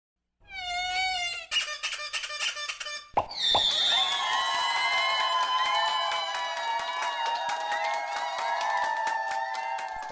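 Novelty intro sound effects: a warbling whistle-like tone, a quick run of clicks, two sharp popping sounds a little after three seconds, then a long held buzzy tone that dips in pitch at its start, with crackling clicks over it.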